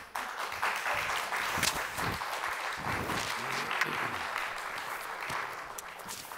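Studio audience applauding, starting suddenly and holding steady before fading out near the end.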